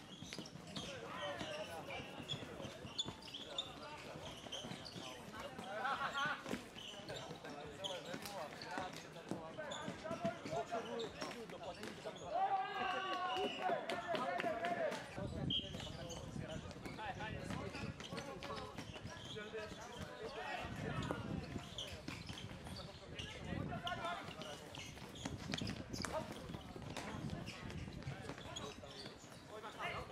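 Floorball play: plastic sticks clacking on the ball and the court, the ball knocking on the floor tiles and boards, and players' footsteps. Players shout and call throughout, with a louder burst of shouting about twelve seconds in.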